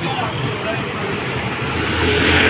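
A small motorcycle engine running as it rides close past, over street traffic noise, with voices near the start.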